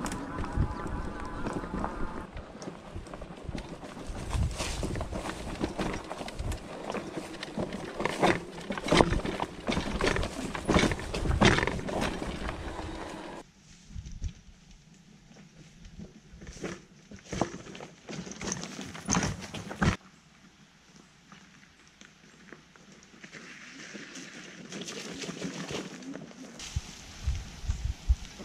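Bakcou Grizzly electric scooter ridden over rough trail: a faint motor whine in the first two seconds, then a dense run of rattling and knocking from the scooter and its strapped-on gear as it bumps over the ground. About 13 seconds in the sound drops sharply to sparser knocks and crunches on a rocky trail, and drops again to a faint hiss about 20 seconds in.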